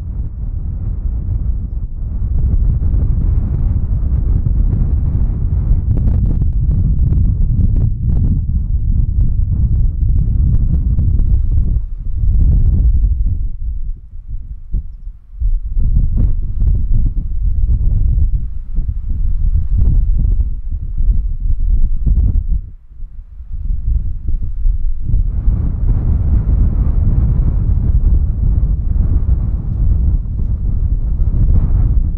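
Strong wind buffeting the camera microphone in gusts, a loud low rumble that eases off briefly twice, about fourteen and twenty-three seconds in.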